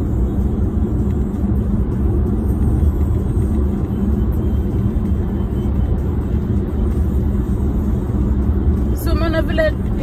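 Steady low rumble of a car's engine and tyres, heard from inside the cabin while cruising on a motorway.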